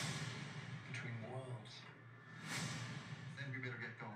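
TV trailer soundtrack playing back: music under short fragments of dialogue, with a sweep of noise about two and a half seconds in.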